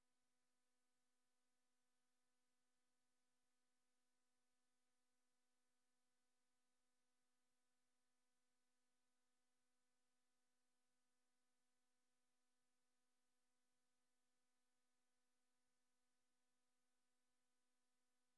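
Near silence: the sound feed is cut off, leaving only a very faint, steady electronic hum of several evenly spaced tones.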